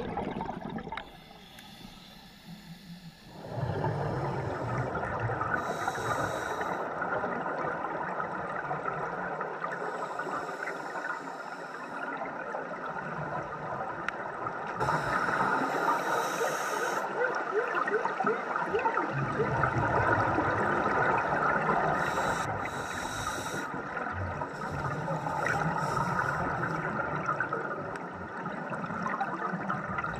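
Scuba divers breathing through regulators, picked up by an underwater camera: a steady gurgling rush of water and exhaust bubbles, with a few louder bursts of bubbles. The sound dips for a couple of seconds about a second in.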